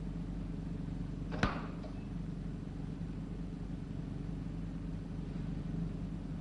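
A single sharp click about one and a half seconds in, like a box shutting, as the surgical laser fires a flash into the patient's eye to seal a retinal hole. Under it runs a steady low hum.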